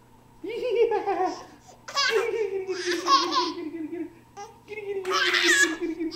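Baby laughing while being tickled, in three long bouts, each a run of quick pulsed laughs.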